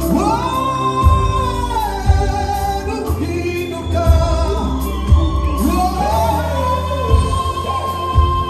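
Live gospel music: a male lead singer holds long notes into a microphone, backed by a choir over a band with a heavy bass.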